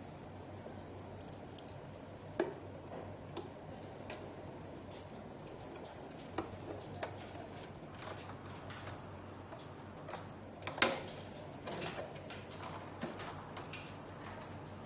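Scattered clicks and knocks of a hand screwdriver and hands working the plastic casing of a mini-split indoor unit as screws and covers go back on, with a louder knock about eleven seconds in, over a faint steady hum.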